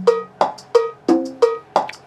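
Cumbia percussion phrase loop playing back on a Roland Octapad SPD-30, auditioned from a USB stick. Evenly spaced percussion hits come about three a second, with a deeper pitched note about a second in.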